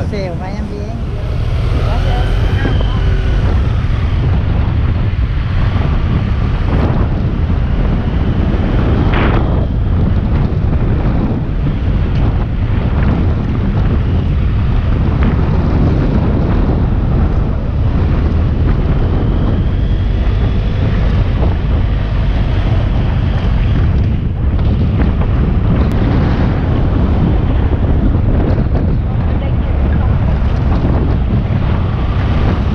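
Steady heavy wind buffeting on the microphone of a camera mounted on a moving motorcycle, a dense low rumble that holds at one level throughout.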